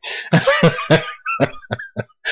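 A man laughing: a breathy rush of air, then a run of short bursts that grow shorter and fainter toward the end.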